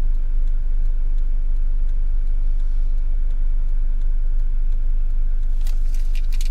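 Camper van engine idling while the vehicle waits at a junction, a steady low rumble heard from inside the cab, with a few light clicks near the end.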